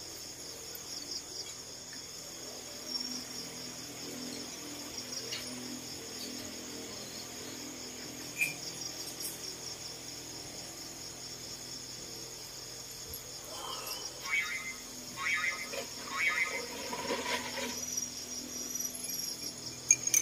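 Crickets and other night insects chirping in a steady high trill. About two-thirds of the way through, a few seconds of broken, pitched calls rise above it.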